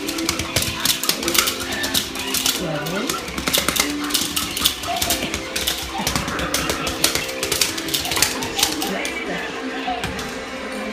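Rapid clicking and clattering from puppies' claws scrabbling on a hard floor and their toys knocking about, over music with held tones.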